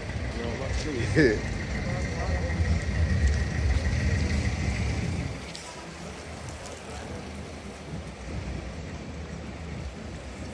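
Traffic on a rain-wet city street, with a low rumble of passing vehicles that drops away about five seconds in, over a steady background hiss. A short laugh about a second in.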